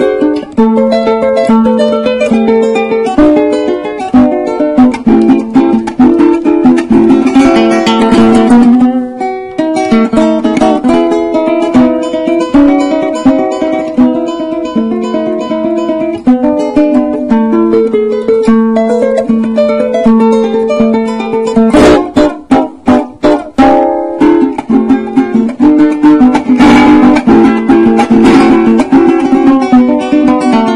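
Venezuelan cuatro played solo: quick plucked melodic runs mixed with strummed chords. A little past the middle comes a run of sharp, choppy strokes.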